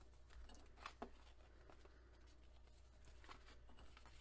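Near silence: faint handling of paper sheets, with a light tap about a second in, over a faint low hum.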